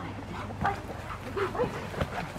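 A young Rottweiler gives a few short barks and whines as she jumps at a bite sleeve.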